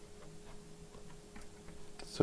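Faint, scattered light clicks of a precision screwdriver being picked up and handled, over a faint steady hum.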